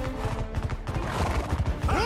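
Film sound effect of heavy hooves pounding in a fast charge, a rapid run of low thuds, over orchestral score.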